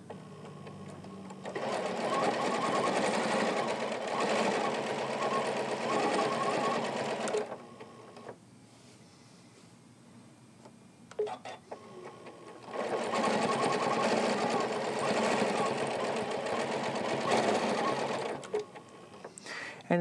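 Janome Continental M17 sewing machine stitching in two runs of about six seconds each, with a pause of about five seconds between them and a few clicks near the end of the pause. It is doing free-motion ruler work with its AcuStitch stitch regulator, which sets the machine's speed to follow how fast the fabric is moved.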